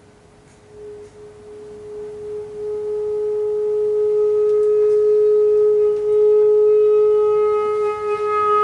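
Clarinet playing one long held note that fades in from silence about a second in and swells gradually louder over several seconds, then sustains, pure-toned and steady.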